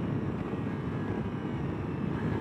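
Ducati Multistrada V4 Pikes Peak's 1158 cc V4 engine on closed throttle as the bike slows from highway speed under braking, with wind and road noise on the rider's microphone. The sound is a steady, even rumble.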